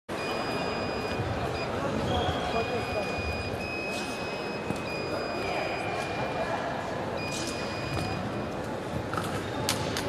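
Electronic fencing scoring apparatus sounding a steady high beep, about a second at a time and six times over, as the fencers touch weapons to check that hits register before the bout. A sharp click comes near the end, over the noise of a reverberant hall.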